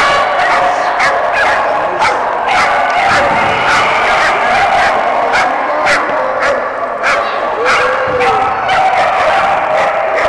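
Several dogs barking and yipping over and over, short sharp barks coming thick and overlapping, with people's voices underneath.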